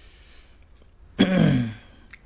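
A man clears his throat once about a second in: a short vocal sound falling in pitch, over faint hiss.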